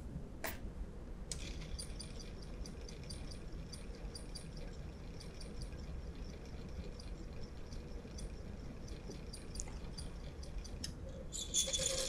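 A small homemade brushed series DC motor turns slowly under a heavy load of hanging screws, at about 50 RPM and near stalling, with faint irregular ticking from its brushes and commutator over a low hum. There is one sharper click just after the start.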